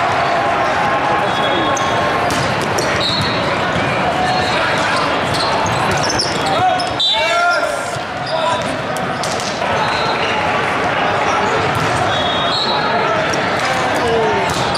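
Hall ambience at a busy multi-court volleyball tournament: a constant din of many voices, with volleyballs being hit and bouncing, heard as frequent sharp smacks.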